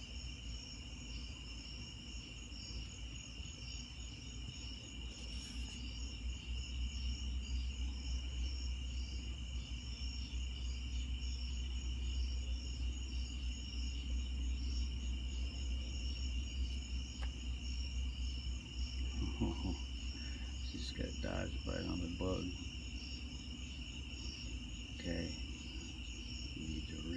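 A steady chorus of night insects chirping in an even, rapid, high trill, over a low rumble.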